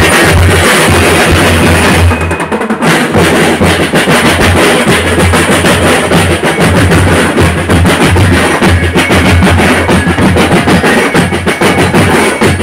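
Drum and lyre marching band playing loudly: a steady, driving rhythm of bass drums and snare drums with metal bell lyres, thinning briefly about two seconds in before the full beat resumes.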